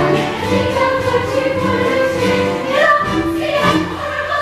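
A chorus of women singing a show tune together over instrumental accompaniment.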